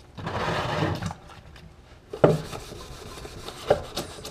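A sheet of 1000-grit sandpaper rasping for about a second, then two light knocks and faint rubbing as hand-sanding of a primed plastic dash panel begins.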